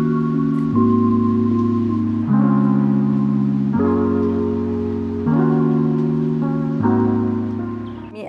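Background music: sustained chords that change about every second and a half.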